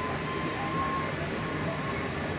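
Interior running noise of a Škoda 27Tr Solaris trolleybus under way, heard in the cabin at the articulated joint: a steady rumble with a faint thin whine during the first second.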